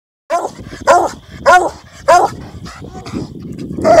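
Bluetick Coonhound barking: a run of short barks, each rising and falling in pitch, about every half second, with another bark near the end.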